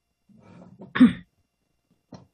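A person clearing their throat once, about a second in, after a brief faint low murmur, heard over a video-call microphone.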